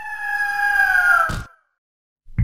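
Bird-of-prey screech sound effect: one long, harsh cry that falls slightly in pitch, lasting about a second and a half and ending in a short noise burst.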